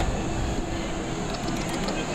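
Steady low background noise, mostly a low rumble, in a lull between spoken lines.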